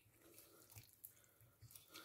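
Near silence, with a few faint, soft clicks of a knife cutting through raw monkfish.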